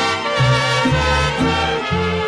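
Instrumental mariachi ranchera music with no singing: brass and strings play over a bass line that moves to a new note about every half second.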